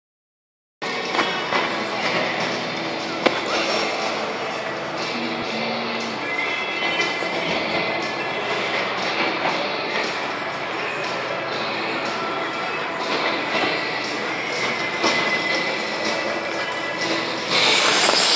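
Music playing over the speakers of a large indoor ice rink, with skate blades scraping and gliding on the ice. The sound starts abruptly about a second in and stays at an even level.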